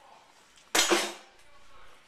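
Kitchenware clattering once, sudden and loud, about a second in, dying away within half a second.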